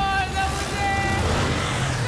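Motorcycle engines rumbling low as a group rides by, with a whooshing swell about halfway through. Over them runs a music cue of long, held, slightly wavering tones.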